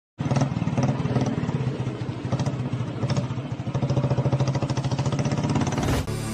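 A vehicle engine running with a fast, even pulsing rhythm, cutting in abruptly just after the start.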